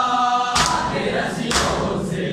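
Men's voices chanting a noha (Shia lament) in chorus, giving way to a crowd's unison matam: palms striking chests together in loud slaps about once a second, twice in these seconds.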